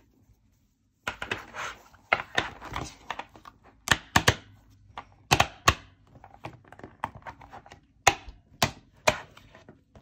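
After about a second of silence, a disc-bound planner is handled and a cover is worked onto its discs: a run of irregular clicks, taps and knocks of plastic and metal, with a few sharper snaps.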